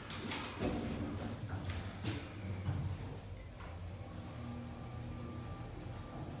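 Lift car doors sliding shut with a few clicks and knocks, then a steady low hum with a faint thin whine as the lift sets off, heard from inside the car.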